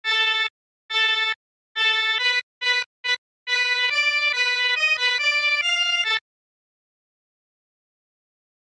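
Synth1 software synthesizer playing its "Accordion" preset, a reedy, bright tone: three short repeated notes on one pitch, a few quicker short notes, then a joined run of notes stepping up and down. It stops about six seconds in.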